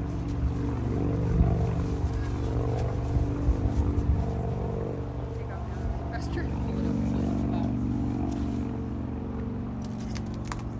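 A steady low engine hum, with gusts of wind buffeting the microphone during the first few seconds.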